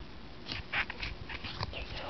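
Pokémon trading cards handled and slid against one another in a small stack: a run of short, dry scrapes and flicks.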